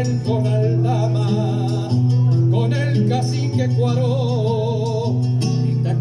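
Acoustic guitar played with steady bass notes that change about every second and a half, with a man's voice holding long, wavering sung notes over it.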